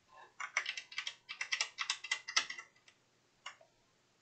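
Computer keyboard keys being typed in a quick run of keystrokes lasting about two seconds, then a single keystroke near the end.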